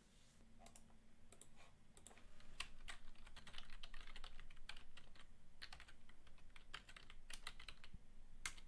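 Faint typing on a computer keyboard: a run of irregular key clicks as a short name is typed.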